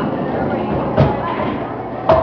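Bowling alley din with background chatter and one sharp knock about a second in, typical of a bowling ball striking the lane or pins.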